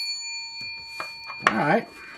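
A bell-like ding: it is struck just before and rings on steadily with several clear high tones. A few light clicks come in the first second, then a brief murmur of voice about one and a half seconds in.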